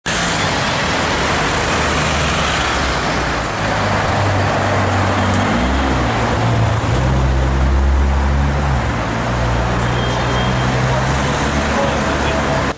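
Busy city street traffic at low speed: several engines running together over a dense wash of road noise, with a low engine note that rises in pitch around the middle.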